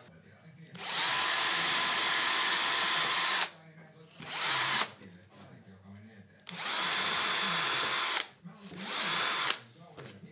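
Power drill with a thin twist bit boring into plywood: four runs of a steady motor whine, two long ones of about two and a half and under two seconds, each followed by a short burst.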